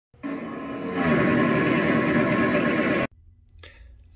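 Short intro music sting that gets louder about a second in and cuts off abruptly just after three seconds, followed by faint room sound with a low steady hum.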